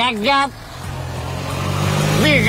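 A motor vehicle's engine with a steady low hum, growing gradually louder from about a second in, after a man's short spoken phrase.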